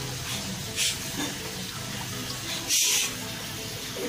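A wooden spatula stirring chopped vegetables in hot water in a metal wok: steady liquid sloshing, with two brief louder swishes about a second in and near three seconds, the second the louder.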